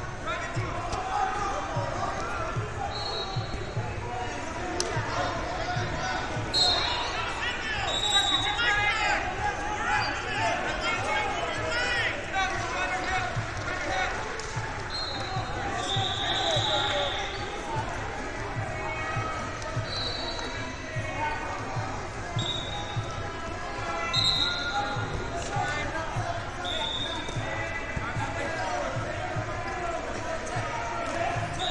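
Busy wrestling-tournament hall: many voices shouting and talking, echoing in the large room, with a dozen or so short, high whistle blasts from referees scattered through. Frequent dull thumps from bodies and feet on the mats run underneath.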